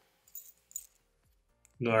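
Small loose metal hardware (screws, clamps and mounting tabs) jingling twice briefly as it is picked up by hand.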